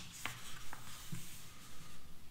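Hands rubbing and sliding over the paper pages of a printed comic book, with a couple of light clicks in the first second.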